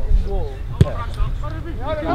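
Voices calling out across an outdoor rugby pitch over a low wind rumble on the microphone, with one sharp thump about a second in.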